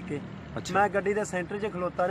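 A man talking, starting a little over half a second in, over a steady low engine hum.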